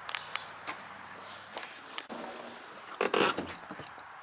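Scattered light knocks and scrapes over a faint background, with a louder cluster of them about three seconds in.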